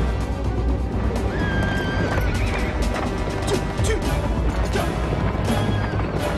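A group of horses galloping, hooves drumming in quick strikes, with a horse neighing, over music.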